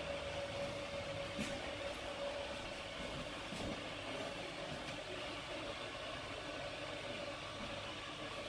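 Battery-powered motorised roller blinds running together, a steady hum as three blinds roll up at once.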